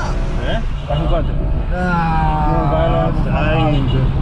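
Steady engine and road noise inside a moving car's cabin, with a voice over it.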